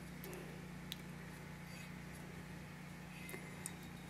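Quiet room tone with a steady low hum, and a few faint light ticks about a second in and twice near the end as a glazed stoneware mug is turned in the hands.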